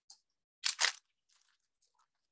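Two short crinkles of the paper sheet under the clay figure, a fifth of a second apart, as hands press and shift the clay.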